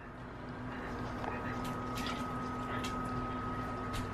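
White sauce being scraped out of a saucepan with a fork and poured over tortillas in a glass baking dish: faint plops of the sauce and a few soft clicks of the fork on the pan, over a steady hum.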